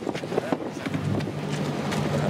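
A boat engine running with a steady low hum, with wind buffeting the microphone and faint voices in the background.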